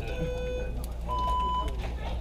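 Electronic race start clock beeping: a lower beep, then a longer, higher beep just after a second in that signals the start. Voices are heard behind it.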